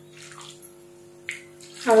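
Water poured from a steel tumbler onto lumps of jaggery in an aluminium pan: a faint trickle and splash, over a low steady hum.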